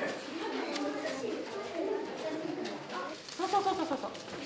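Indistinct low voices talking in a room, with no clear words.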